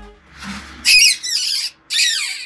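A small animal's high-pitched distress squeals, loud and falling in pitch, coming in bouts from about a second in, as the background music fades out.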